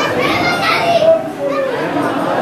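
Many people talking at once in a packed queue, no single voice clear, with one higher, louder voice calling out during the first second.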